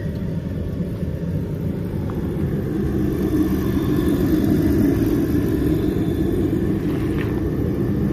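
Kerosene-fired forced-air jet heater running with its burner lit: the fan and flame make a steady low whooshing drone, which grows louder about three seconds in.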